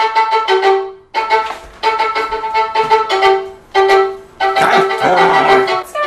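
Background music: a violin playing short, separated notes in quick phrases.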